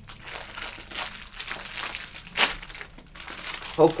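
Cellophane wrapper of a fortune cookie crinkling as it is handled and torn open, with one sharp snap about two and a half seconds in.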